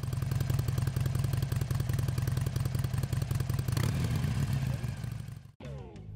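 Harley-Davidson motorcycle's V-twin engine idling loudly with an even, rhythmic beat, cutting off abruptly near the end.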